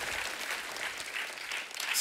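Studio audience applauding, a steady clapping without speech.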